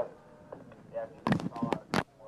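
Sharp clicks or knocks of objects being handled: a quick cluster a little over a second in, and one louder click just before the end.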